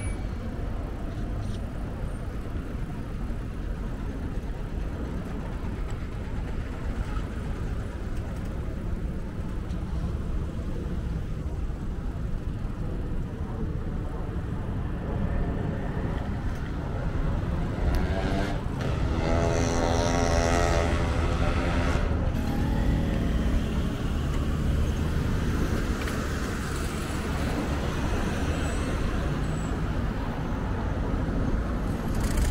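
Road traffic with a steady low rumble. A louder vehicle goes by about two-thirds of the way through, its engine note rising above the traffic for a few seconds.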